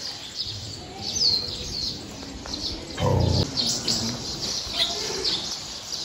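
Small songbirds chirping and calling, with many short high chirps and a clear falling whistle about a second in. A brief low sound comes near the middle.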